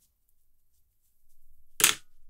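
Near silence, then one short sharp click or snap near the end.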